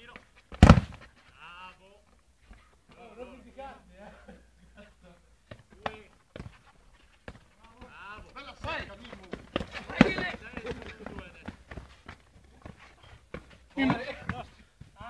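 A football kicked hard on an artificial-turf pitch, a loud sharp thud just under a second in, followed by a few smaller knocks and another sharp ball strike around ten seconds in, with players' voices calling across the pitch.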